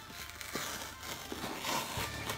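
Faint rustling and crinkling of a subscription box's packaging as it is handled and opened, with a few soft scattered handling noises.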